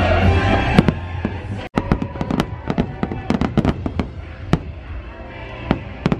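Aerial fireworks going off: a rapid flurry of sharp bangs and crackles from about two seconds in, with a last bang near the end, over a loud show music soundtrack. The sound cuts out for an instant just before the bangs begin.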